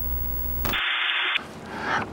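Edited-in TV test-card glitch sound effect: a steady electrical buzz over a low hum, then about half a second of static hiss that cuts off abruptly.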